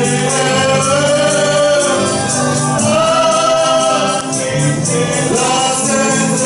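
Gospel song with a choir singing, a man's voice leading on microphone, over a steady bass note and a steady shaking percussion beat.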